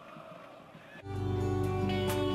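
Portuguese-language Christian worship music: a soft passage for about the first second, then full sustained instrumental chords come in loudly.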